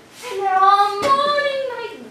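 A young female voice singing solo, holding two long notes, the second higher than the first.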